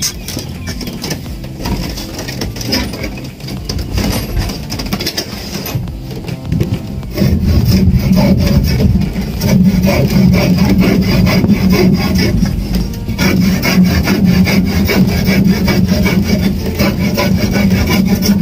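Hand saw cutting through wood, growing much louder about seven seconds in.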